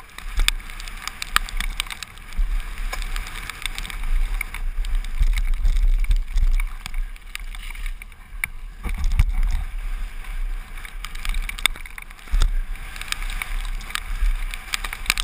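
Mountain bike riding fast down a rough dirt trail, heard from a helmet-mounted camera. Wind buffets the microphone with a heavy rumble, and the chain, frame and tyres rattle and click sharply over the bumps.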